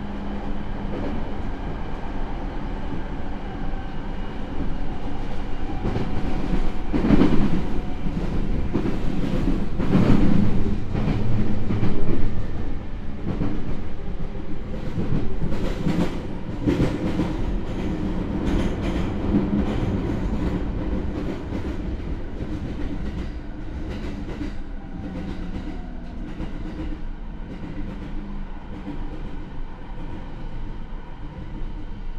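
Running noise inside the motor car of a JR E217 series electric train: the hum of its Mitsubishi IGBT inverter and MT68 traction motors under the rumble of steel wheels on rail. A louder stretch of clattering over the track comes about a third of the way in. The noise then grows gradually quieter as the train slows into a station.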